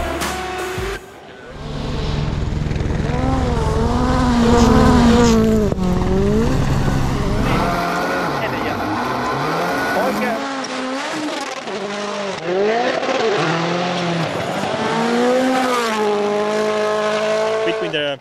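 Hyundai i20 N Rally1 Hybrid rally car's turbocharged four-cylinder engine revving hard at full race pace. From about a second in, its pitch climbs and drops repeatedly as it shifts up and down through the gears.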